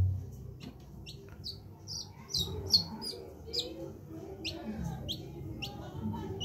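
Newly hatched chick peeping repeatedly, short high peeps sliding down in pitch, about three a second.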